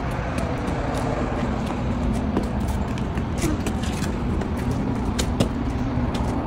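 Steady low rumble of nearby road traffic, with a faint steady hum under it and a few light taps scattered through.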